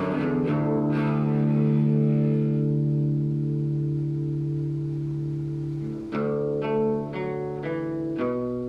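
Solo cutaway acoustic guitar: a few plucked notes, then a chord left ringing and slowly fading for several seconds, then new picked notes about six seconds in.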